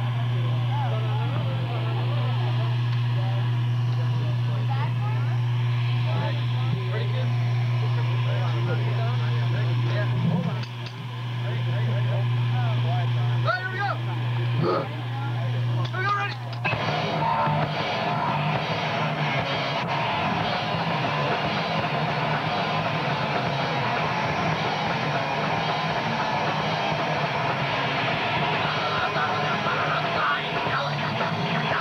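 A steady low hum with faint crowd chatter, then about halfway through a hardcore punk band breaks into a song: loud distorted electric guitars, bass and drums.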